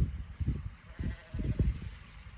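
A sheep bleating faintly, one drawn-out call about a second in, under irregular low rumbling gusts of wind on the microphone.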